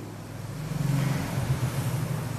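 Low hum of a motor vehicle engine, swelling from about half a second in and holding steady.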